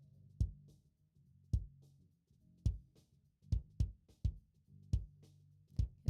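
Live-recorded kick drum track playing back through an SSL E-series channel strip EQ, boosted around 60 Hz and at 8 kHz with 2 kHz scooped out. There are eight punchy hits in an uneven pattern, with a low ringing from other stage instruments bleeding in between the hits.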